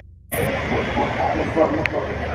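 Street noise with people's voices talking and a low steady vehicle rumble, after a brief dropout at the very start.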